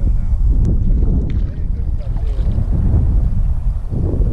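Wind buffeting the microphone in a steady low rumble, with faint voices and a couple of light clicks in the first second or so.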